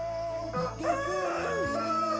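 Slow ballad music with held notes, and a rooster crowing over it from about a second in: one long call that rises, holds and falls away.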